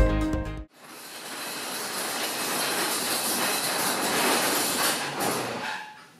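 Background music cuts off under a second in. A steady rushing noise follows, swelling slightly and fading out near the end.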